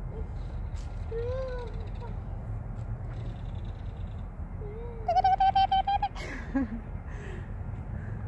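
A young child's voice making short playful calls that rise and fall, then a burst of rapid laughter about five seconds in, the loudest sound, followed by a falling call of "Mommy". A steady low outdoor rumble lies underneath.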